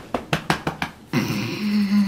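A few short soft clicks, then a long low hum-like voice sound that holds one pitch and starts to waver near the end.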